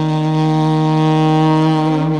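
Alto saxophone in Carnatic classical style holding one long, steady low note.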